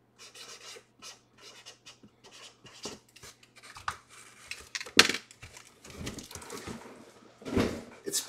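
Scattered small clicks, taps and scratchy rustles of objects being handled, with a sharper click about five seconds in and a louder rustle near the end.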